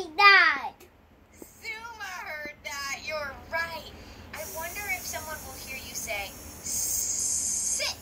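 Speech from a speech-therapy lesson, then a drawn-out 's' hiss lasting about a second near the end: the sound being practised, held long as in 's-s-s-sit'.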